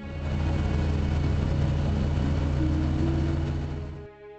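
A passenger boat's engine running steadily, with water and wind noise around it.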